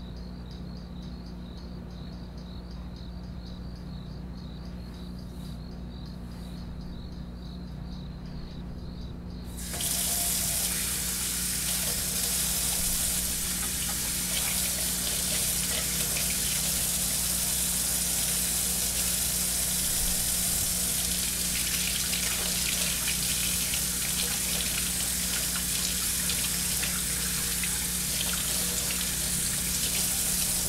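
Faint rhythmic chirping over a low steady hum. About ten seconds in, a kitchen faucet comes on suddenly, and water runs steadily into a stainless steel sink, splashing over hands being washed.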